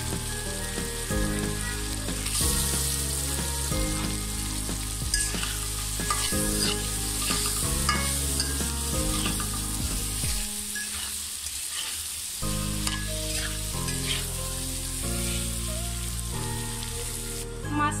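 Onion-spice masala and shrimp sizzling in hot oil in a metal karahi, with a metal spatula scraping and stirring against the pan now and then.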